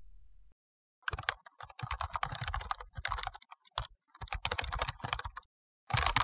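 Rapid keyboard typing clicks in several bursts with short pauses between them, starting about a second in: a typing sound effect for on-screen text being typed out.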